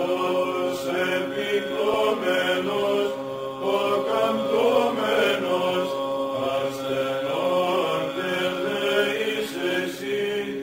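Greek Orthodox Byzantine chant: voices sing a winding melody over a steady held drone (the ison).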